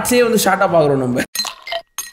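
A man speaking, cut off just over a second in, followed by a few short, high clinks of an intro sound effect.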